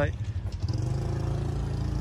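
Daewoo Lanos 1.6 four-cylinder engine idling with a steady low hum.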